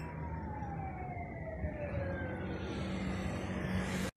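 A siren wailing, its pitch sliding slowly down over about two seconds, over a steady low rumble.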